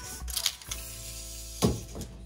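Steel tape measure being pulled out and its blade set across a wall, with a few metallic clicks and one sharp knock near the end, over background music.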